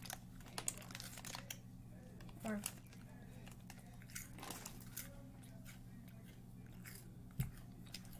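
A person chewing a crunchy snack close to the microphone, with many short sharp crunches and a thump near the end, over a steady low hum.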